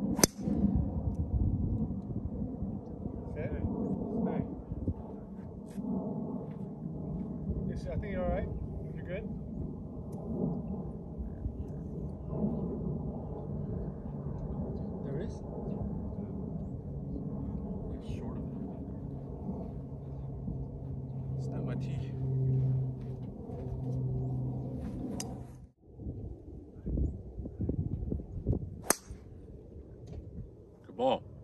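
A golf driver striking a ball off the tee with a sharp crack, twice: once just after the start and again near the end, from two players teeing off in turn.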